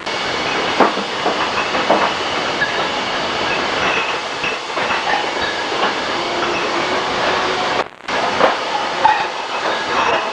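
Wine bottling line running, with a steady mechanical clatter and glass bottles clinking against each other. The sound drops out for a moment about eight seconds in.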